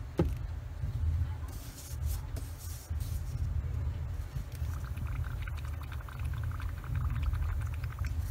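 A Neo for Iwata TRN1 trigger airbrush being back-flushed with cleaner: a brief hiss of air, then from about five seconds in a rapid bubbling as air is forced back through the paint channel into the cup, over a steady low hum.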